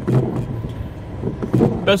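Steady noise inside the cabin of a car waiting in rain, with a windscreen wiper sweeping across the glass and brief bits of a man's voice.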